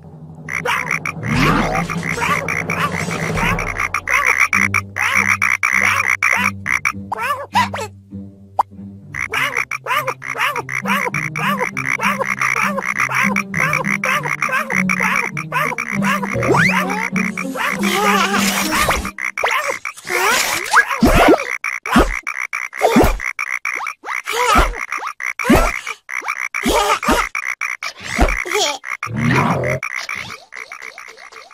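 A crowd of cartoon frogs croaking rapidly and continuously, with a short lull about eight seconds in. In the last third the croaks come one at a time, about once a second, each with a low thud.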